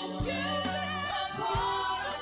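A man and a woman singing a slow pop ballad duet live over band accompaniment that holds sustained low notes. The sung line wavers with vibrato.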